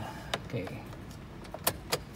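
Car key being worked in a steering-column ignition switch: a few sharp clicks, two of them close together near the end, with the key ring jangling.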